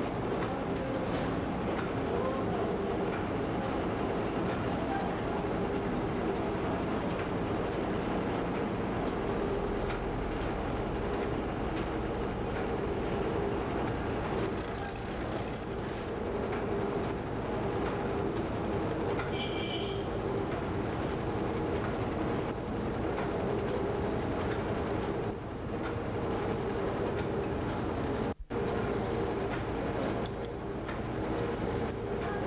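Wire nail making machine running at speed: a steady, dense clatter of rapid repeated strokes over a constant mechanical hum, cutting out for an instant near the end.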